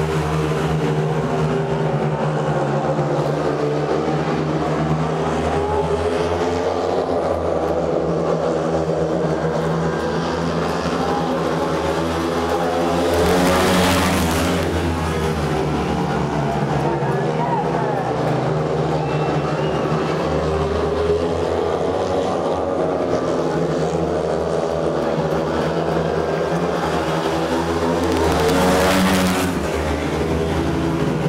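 Four speedway bikes, 500 cc single-cylinder methanol-burning engines, racing flat out round a dirt oval in a steady high-revving pack. The sound swells as the pack sweeps past, once midway and again near the end.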